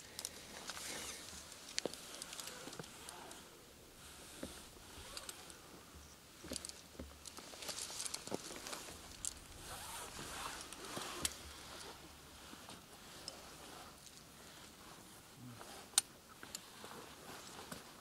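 Faint rustling and scraping with scattered light clicks, typical of climbing rope being paid out and hardware and clothing moving close to the microphone; one sharper click near the end.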